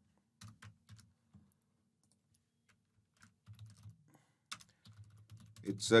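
Soft keystrokes on a computer keyboard as text is typed, coming in short runs with a pause of about two seconds in the middle.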